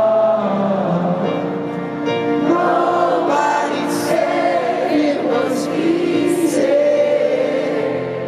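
Live band music from a stadium concert: a piano-led song with many voices singing together over it.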